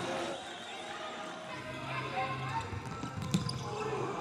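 Faint indoor futsal arena ambience: distant voices and crowd murmur, with a single ball or shoe knock on the hard court a little after three seconds.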